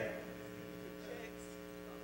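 Faint, steady electrical mains hum from the sound system, a set of even low tones that do not change.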